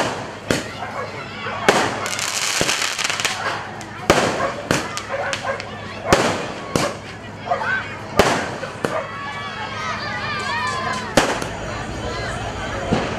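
Aerial fireworks bursting overhead: a string of sharp bangs every second or two, with a stretch of dense crackling about two seconds in.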